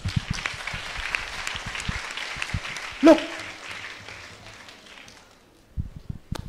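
A large audience applauding, many hands clapping at once, the applause dying away over the last couple of seconds.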